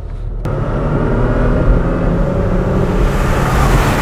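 Magnuson-supercharged 3.5-litre V6 of a Toyota Tacoma pulling under hard acceleration, its engine note coming in suddenly about half a second in and building in loudness. Near the end a rush of tyre and wind noise joins it as the truck goes by.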